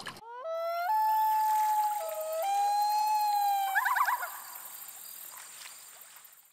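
Common loon wailing: one long call that rises, holds its pitch, dips briefly and rises again, then breaks into a short wavering trill about four seconds in before fading.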